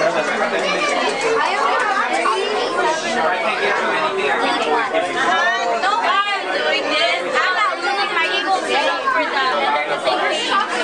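Chatter of a group of people talking over one another, several voices at once and none standing out.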